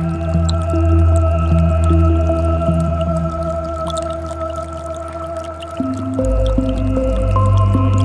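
Ambient music of slow, sustained synth chords over a deep bass, with the chord changing about six seconds in, laid over a faint trickle of creek water.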